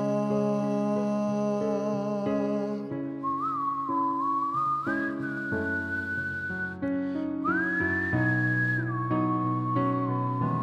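Instrumental passage of a slow ballad: sustained backing chords, with a whistled melody entering about three seconds in that slides up between long held notes.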